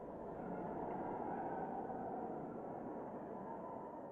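Steady road noise of a car driving, a low rumbling hiss that grows a little louder in the first second and then holds steady.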